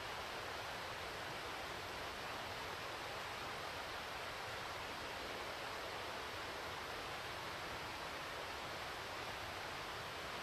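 Steady, even outdoor hiss, like wind in trees or distant running water, with no distinct events.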